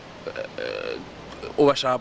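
A man's voice: a short, low throaty vocal sound, then a spoken word near the end.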